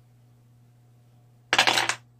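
A sudden loud clatter of small hard objects, lasting about half a second, starting about a second and a half in after near quiet.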